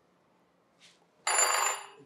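Antique wooden wall telephone's bells ringing with an incoming call: a sudden loud ring starts a little past halfway and fades near the end.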